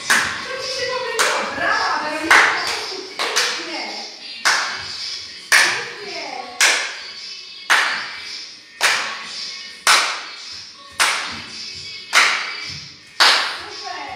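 Hand claps keeping a slow, steady beat, about one clap a second, with a voice between the claps in the first few seconds.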